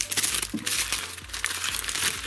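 A paper fast-food burger wrapper crinkling and rustling as it is unwrapped and crumpled by hand, in a steady run of irregular crackles.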